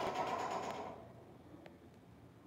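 The reverberating tail of a door slam dying away over about a second in a hard-walled lobby. Then quiet room tone, with a faint click near the end.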